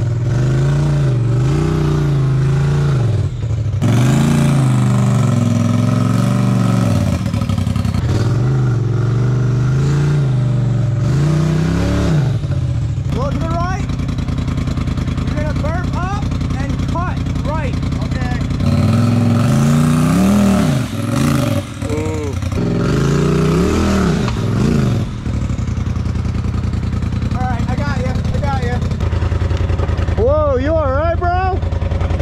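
Polaris RZR turbo side-by-side engine revving up and down in repeated short surges as it crawls over boulders. The revs hold steadier for a few seconds in the middle, surge again, then settle near the end.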